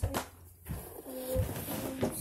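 Cardboard shipping box being handled: a few light clicks and a low knock about a second and a half in. Over the second half there is a steady, low hum-like tone.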